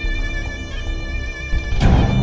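Suspense film score: sustained high string notes held over a low drone, with a sudden loud hit near the end.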